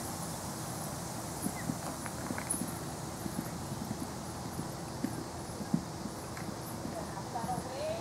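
Hoofbeats of a horse cantering on a sand arena: an irregular run of soft thuds over a steady background hiss.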